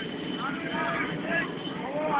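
Voices calling out over a steady low background rumble.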